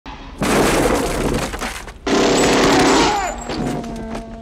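Two long bursts of automatic gunfire, the first about a second and a half and the second about a second, with the sound of things breaking and shattering mixed in.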